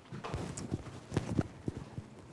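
Footsteps with clothing rustle, picked up by a clip-on microphone worn by a woman walking across a stage: about five uneven soft knocks.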